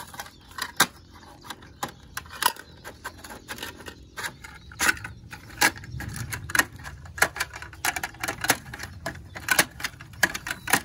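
Plastic toy garbage truck's side-loader arm being worked by hand to lift a small bin, giving irregular clicks and rattles of plastic parts.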